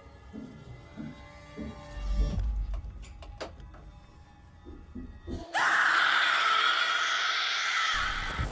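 Horror-trailer sound design: a low, dark rumble with a deep booming hit about two seconds in, then from about five and a half seconds a loud, long, shrill scream.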